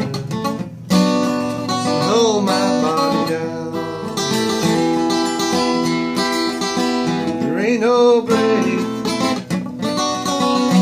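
Steel-string acoustic guitar with a capo, strumming and picking chords in D minor, with a fresh loud strum about a second in.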